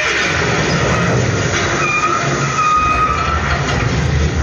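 Recorded vehicle sound effect in a dance soundtrack: a steady road rumble of a bus driving, with a held higher tone from about two seconds in, played through a hall's speakers.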